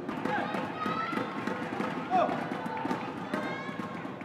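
Badminton doubles rally: short squeaks of shoes gripping the court mat and sharp clicks over steady crowd voices, loudest about two seconds in.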